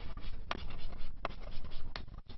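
Chalk writing on a blackboard: continuous scratchy strokes with three sharp taps of the chalk against the board.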